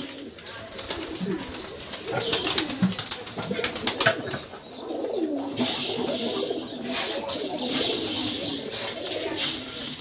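A flock of domestic pigeons cooing, many overlapping low calls at once, with scattered sharp clicks among them.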